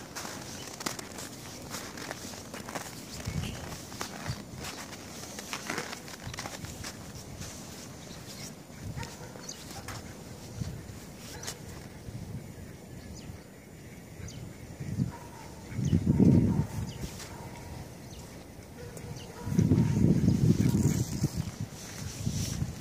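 Mallard ducks calling faintly over quiet outdoor ambience, with scattered light clicks and two louder low rumbles about 16 and 20 seconds in.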